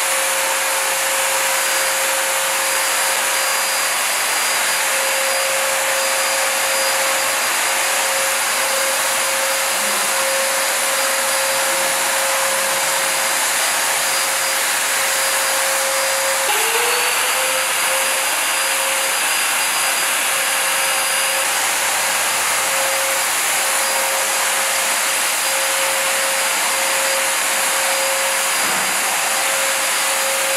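Handheld electric fogger spraying disinfectant, its motor-driven blower running with a steady whine over a hiss of air and spray. About sixteen seconds in the pitch drops briefly and climbs back up as the motor spins up again.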